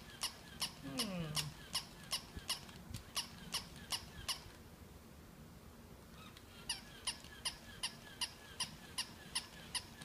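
Battery-powered plush toy dog worked from its wired remote, making a rhythmic clicking squeak about three times a second that stops for about two seconds midway and then starts again. Its batteries are thought to be getting flat.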